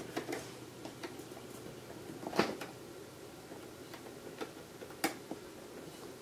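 A Corsair laptop RAM module being pressed into a memory slot of a 27-inch 2011 iMac: a few faint handling ticks, then two sharp clicks about two and a half seconds apart as the module latches into the slot on each side.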